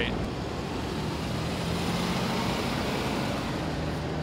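City street traffic noise, with a bus engine running steadily as it drives past.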